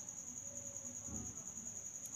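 Faint, steady, high-pitched pulsing trill of insects, most likely crickets, in the background.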